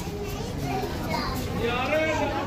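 Voices talking close by, a child's among them, over a steady low background rumble.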